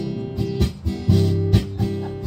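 Acoustic guitar strumming sustained chords, a strum about every half second, in a pause between sung lines of a country song.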